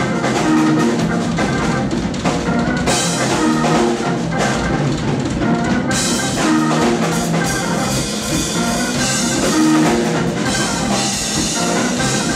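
Live instrumental jazz-fusion trio: extended-range multi-string electric bass, drum kit and keyboard playing together. The cymbals grow brighter about three seconds in and again about six seconds in.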